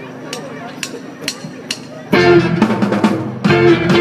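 A live band's count-in: four sharp clicks, about two a second, then a little past halfway the whole band comes in loudly with drum kit, bass and electric guitar.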